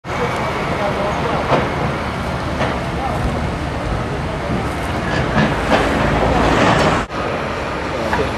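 Steady outdoor noise of traffic and site machinery, with faint voices in it, broken by a short cut about seven seconds in.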